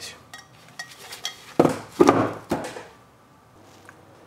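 Metal clanks and knocks from a solid cast-iron hotplate burner being handled: a few light clicks, then three louder knocks in quick succession around the middle.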